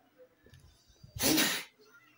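A single short, loud burst of breath from a person, like a sneeze, about a second in and lasting about half a second.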